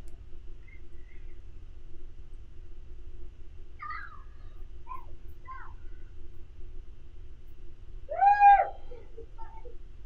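Children shouting and calling while playing outside, heard from indoors: a few short distant calls, then one loud drawn-out yell about eight seconds in.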